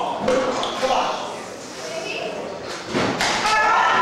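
Wrestlers' strikes and bodies hitting the ring mat: several sharp thuds echoing in a large hall, the last two close together about three seconds in, with a voice shouting near the end.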